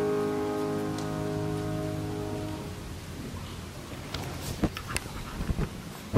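The last chord of a choir with piano dying away and cutting off about two and a half seconds in. After it come rustling and a few sharp knocks and clicks as the camera is handled and moved.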